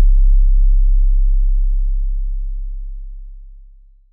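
A very deep bass boom closing the soundtrack, held and fading out slowly over about four seconds until it is gone. A higher held note cuts off just after the start.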